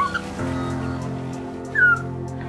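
Australian magpie chick giving two short, squeaky calls, the second louder and falling in pitch near the end, over soft background music with held notes.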